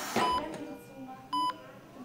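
Bedside patient monitor beeping: short, even-pitched beeps a little over a second apart, the regular pulse tone of a vital-signs monitor.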